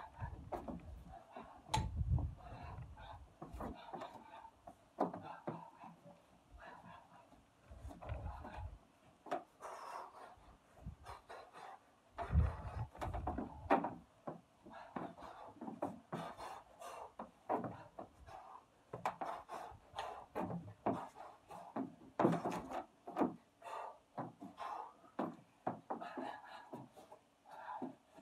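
Quick, irregular clicks and clinks of the metal plates on small spin-lock dumbbell bars, shaken with each punch while shadow boxing, over the man's breathing. A few low dull thuds come around two, eight and twelve seconds in.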